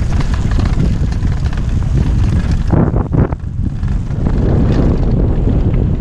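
Wind buffeting a helmet camera's microphone on a fast mountain-bike descent over dry dirt, mixed with the rattle of the bike and its tyres on the rough ground. A couple of sharper knocks come about three seconds in.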